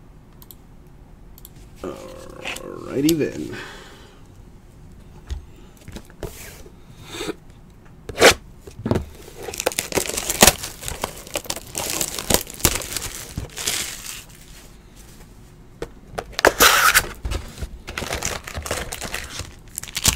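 Clear plastic shrink wrap being torn and crinkled off a cardboard box of trading cards, in a dense run of crackling and rustling that fills most of the second half.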